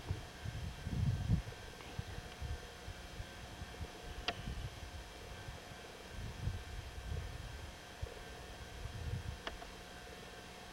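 Faint outdoor ambience with irregular low rumbles and thuds on a handheld camcorder's microphone, under a steady faint hum. Two brief sharp clicks, about four seconds in and near the end.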